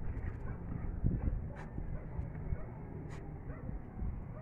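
A dog barking, over a steady low rumble of wind on the microphone.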